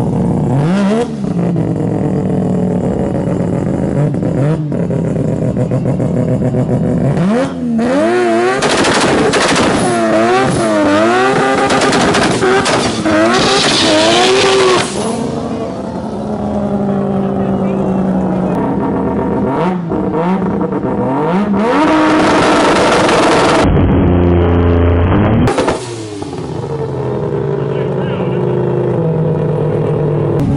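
Mazda RX-7 FD with a 20B three-rotor rotary engine making a drag-strip pass. The engine is revved up and down several times in quick succession, then runs hard at high revs for a few seconds. This is the pass on which the car popped a small wheelie and broke an axle.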